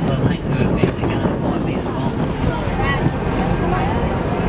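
Wind buffeting the microphone over the steady running noise of a boat, with faint voices in the background.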